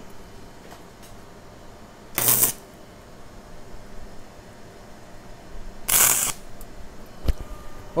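Two brief bursts of stick-welding arc crackle, about two seconds and six seconds in, each under half a second: short tack welds laid with a 1.6 mm electrode on thin 1.2 mm stainless-steel sheet. A light click follows near the end.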